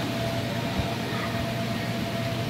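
Steady whirring drone of the electric air blower that keeps an inflatable bounce course inflated, a constant hum with a thin steady tone through it. A faint soft thump comes near the middle.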